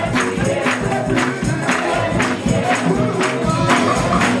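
Gospel music: a choir singing over a steady beat, with a bright percussive strike about twice a second.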